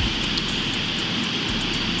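Steady outdoor background noise picked up by a police body camera's microphone: an even, high-pitched hiss.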